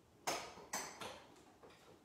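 A few sharp clicks and knocks from a studio light being handled and adjusted, the loudest about a quarter second in, then two more close together around one second in.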